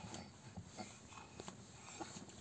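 Faint, scattered soft sounds from two children's hands pressing and tapping together and the rustle of a padded jacket sleeve, with a few faint non-speech vocal sounds from a child.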